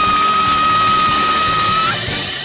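Music: a single high note held steady, with a slow falling swoosh above it, stopping near the end.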